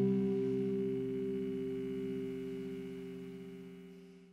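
The band's final chord ringing out, several held notes slowly fading away with a slight wavering.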